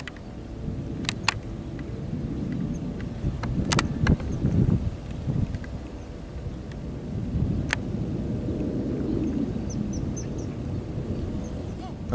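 Low wind rumble on the microphone over a faint steady hum, with four sharp clicks, the loudest about four seconds in, and a few faint high chirps near the end.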